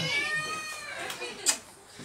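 A person's drawn-out, high-pitched vocal sound lasting about a second, rising then falling in pitch, followed by a short sharp smack about a second and a half in.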